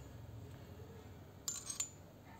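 A quick cluster of light metallic clinks about one and a half seconds in, from aluminium flat bicycle pedals knocking together as they are handled.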